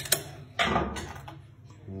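Metallic clicks and a short rattle from a lever-lock pick tool seated in a SECUREMME lever lock as it is handled: two sharp clicks at the start, then a brief scraping rattle about half a second in.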